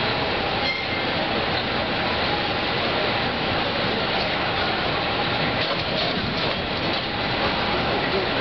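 San Francisco cable car rotating on its turntable: a steady rumble and clatter of the car and turntable rolling on rails.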